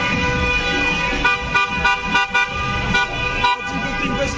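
Car horns honking: a steady held blare, breaking from about a second in into a run of short rhythmic toots.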